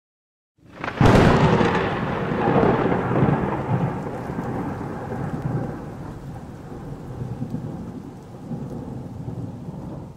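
Thunder sound effect: a sharp crack about a second in, then a long rolling rumble that slowly fades.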